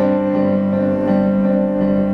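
Kawai digital piano playing sustained chords in an instrumental passage of a song, moving to a new chord about a third of a second in and again just past a second.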